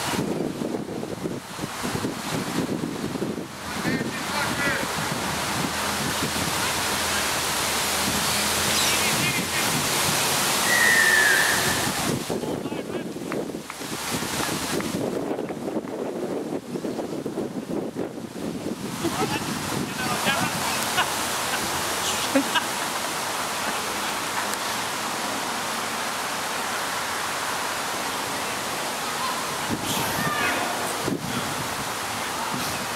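Wind rushing on the microphone at a rugby match, with players calling and shouting on the field. About eleven seconds in there is a short falling whistle-like tone.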